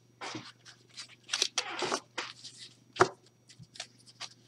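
A deck of oracle cards being gathered and handled on a cloth: irregular rustling and sliding of card stock, then a single sharp tap about three seconds in.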